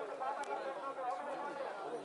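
Crowd of spectators chattering, many voices overlapping, with one sharp click about half a second in.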